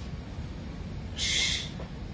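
A short, forceful breath out about a second in, over a steady low hum: the kind of exhale that goes with pushing a dumbbell overhead.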